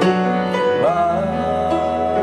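A man singing a slow southern gospel song with a live church band of piano, guitars and bass. About a second in, his voice glides up into a long held note over a sustained low bass note.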